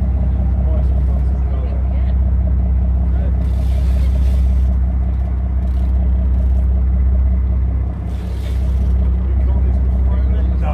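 Boat engine running steadily, a low even hum, with two short bursts of hiss about four seconds in and again near the end.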